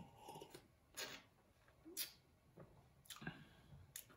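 Faint tasting sounds: a man sips sherry from a tasting glass and works it in his mouth, with a few short smacks and clicks of the lips and tongue about once a second.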